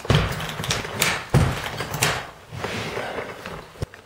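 Several knocks and clunks from a carpet stretcher's metal head and lever arm being worked and shifted on carpet, with one heavy thump about a second and a half in and a sharp click near the end, and scuffing in between.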